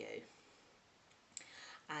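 A woman's voice trails off, then a pause. Near the end comes a small mouth click and a brief intake of breath before she speaks again.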